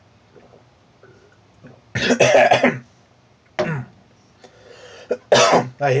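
A man coughing and clearing his throat just after taking a sip of drink. There are three loud coughs, the first about two seconds in and the loudest.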